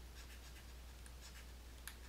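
Faint taps and light scratches of a stylus writing a word on a tablet screen, over a steady low hum.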